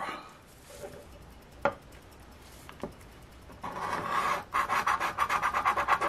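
A scratch-off lottery ticket being scratched with a round handheld scratcher tool. It is quiet at first apart from a couple of faint clicks. From just past halfway come rapid repeated rasping strokes as the coating is scraped off the winning-numbers panel.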